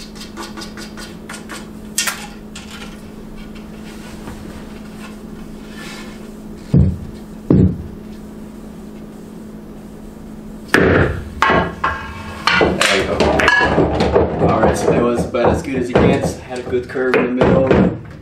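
Pool balls and cues being played in a massé trick shot on a pool table. Two dull knocks come about seven seconds in, then over the last seven seconds a busy run of sharp clacks and knocks from the balls, the cues and the table, over a steady low hum.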